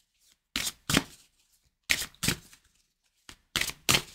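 Deck of oracle cards being shuffled by hand: about seven short bursts of shuffling, several in quick pairs, with quiet gaps between.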